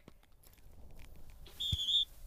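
A dog whistle blown once: one steady, high whistle blast of about half a second, starting near the end. It is a recall signal calling the retrieving dog back in.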